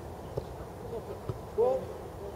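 Men's voices calling out across a football pitch, with one short, loud shout near the end, and a couple of brief knocks.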